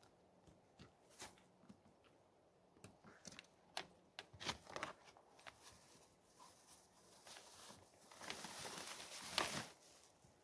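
Faint scattered clicks and knocks of things being handled in a motorcycle's side bag, then a louder rustle of a plastic shopping bag being pulled out near the end.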